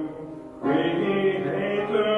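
Congregation singing a sung liturgy or hymn. The phrase breaks off at the start, and the next sung phrase comes in a little over half a second in.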